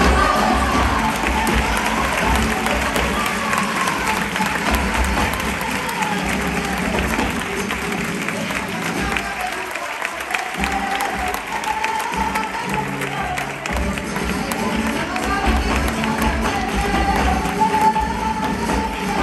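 Flamenco palmas: many people hand-clapping together, with a wavering sung voice over it and crowd noise. The low end drops away from about halfway in for a few seconds, then comes back.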